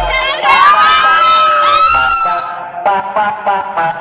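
A small group of young women shouting and cheering together at close range: one long held shout rises out of it about half a second in, then a run of short, choppy shouts near the end.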